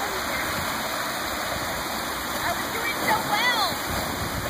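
Steady rush of water sheeting down a sloped spillway into a river pool. About three seconds in, a high-pitched cry rises and falls in pitch over it.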